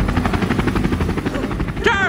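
Helicopter rotor blades chopping in a rapid, even beat.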